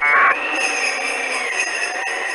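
Sleigh bells jingling steadily, opening with a short, bright, ringing burst.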